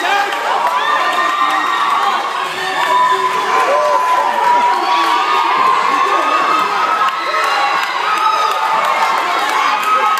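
Spectators at a boxing bout cheering and yelling, many high-pitched voices shouting over one another without a break.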